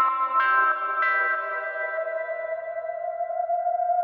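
Instrumental music: a few picked guitar notes ring out with echo, and a long held note bends slowly upward in the way a pedal steel guitar slides. There are no drums yet.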